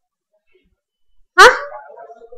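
Silence for over a second, then a woman's single short questioning "huh?", sudden at the start and rising in pitch, as she prompts for an answer.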